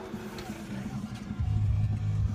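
Power-release second-row seat of a 2009 Chevrolet Tahoe LTZ folding and tumbling forward at the press of a button. Its mechanism runs quietly at first, then a steady low hum sets in a little past the middle, with faint music underneath.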